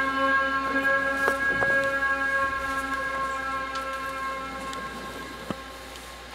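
Cello holding a long final note at the end of a song, with its overtones ringing steadily and slowly fading out. A short knock sounds near the end.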